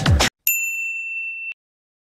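A single high ding sound effect: one steady bell-like tone held for about a second, then cut off abruptly. It follows the last fraction of a second of background music.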